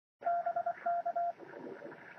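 A single steady beeping tone keyed on and off in a quick run of short and longer beeps, in the manner of Morse code, stopping after about a second and a quarter. A faint hiss follows.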